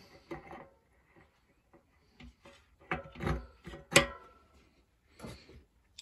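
Shimano cassette sprockets clicking and clinking as they are lined up on the thin spline and slid onto the freehub of a Hope RS1 rear hub. A few scattered clicks, then a cluster of louder clinks about three to four seconds in, the sharpest near four seconds.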